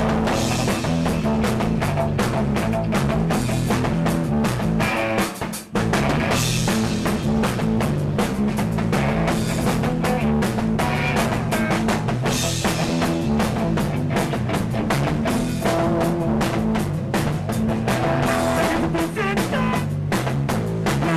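A live rock band playing amplified electric guitar and a drum kit, with a brief break about five and a half seconds in before the music comes back in.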